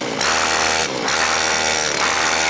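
Motor scooter's small engine running hard at steady, high revs, a loud buzz that dips briefly about a second in.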